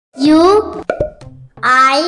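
Animated channel-logo sting: a high, childlike voice calls out two rising syllables, with two quick pops between them.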